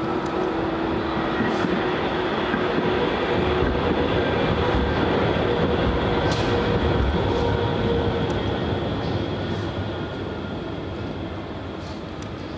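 A tram passing along its tracks, with a rumble and a faint steady hum that swell to their loudest in the middle and fade toward the end.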